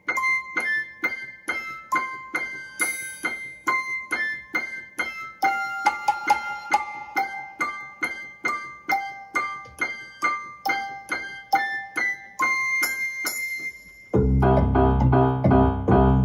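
Alesis Melody 61 electronic keyboard in a piano voice, playing a simple high-register melody of evenly paced separate notes. About two seconds before the end it jumps to low notes, suddenly much louder and fuller.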